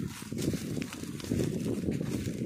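A young bullock shifting about and nosing in dry straw, the straw rustling and crackling under its hooves and muzzle, over a low uneven rumble.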